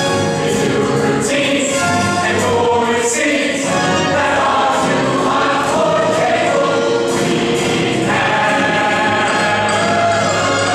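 Musical theatre ensemble singing in chorus over an instrumental accompaniment with a steady beat, a big full-cast number.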